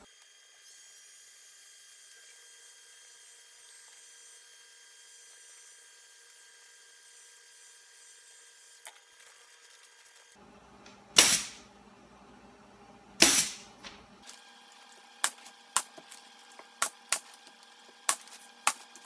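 Pneumatic staple gun firing staples through the vinyl rear window into the tack strip: two loud shots about 11 and 13 seconds in, then a quick run of about seven lighter shots near the end. Before that there is only a faint steady hiss.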